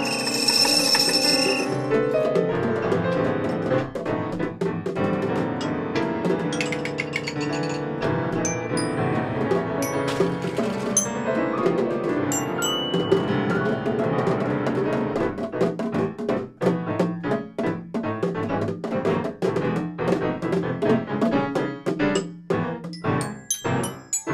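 Free-improvised duet of grand piano and mallet percussion. A high ringing metallic tone in the first two seconds, then dense piano notes mixed with sharp struck mallet notes that grow busier in the second half.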